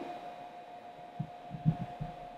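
Quiet room tone with a steady high hum, and a few soft low thuds about a second in and again near the end.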